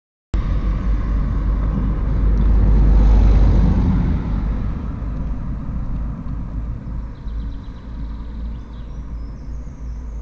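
Outdoor roadside field sound: wind rumbling on the camera microphone, with a car passing that is loudest about three seconds in.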